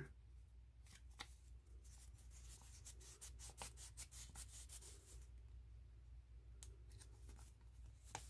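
Faint crinkling and small crackles of a sticker and its paper backing being handled and picked apart by the fingers to peel the sticker off, busiest in the first half, with a few more ticks near the end.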